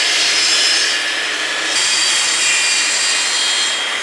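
Plunge-cut track saw running along its guide rail, trimming a new splinter guard strip flush with the blade: a loud, steady motor whine with cutting noise. The pitch falls near the end as the blade spins down.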